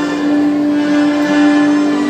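A group of children's pianikas (melodicas) playing together, a low note held through with other notes sounding above it.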